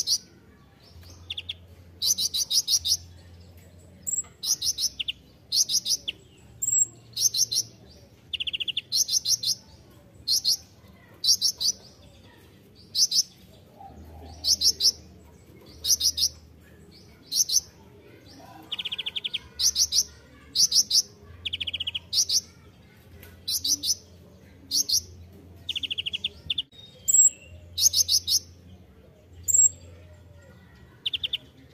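Van Hasselt's sunbird (kolibri ninja) singing a long run of short, high, buzzy trilled phrases, about one a second, a few of them pitched lower than the rest.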